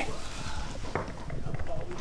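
Quick, soft footsteps of someone creeping along, with a light rustling.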